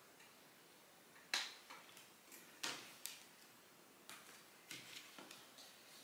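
Soft, scattered clicks and rustles of a cardboard CD digipak being handled and opened, about half a dozen faint snaps a second or so apart.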